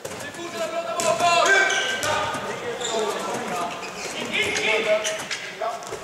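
A handball bouncing on a sports-hall floor during play, with shouts from players or spectators over it.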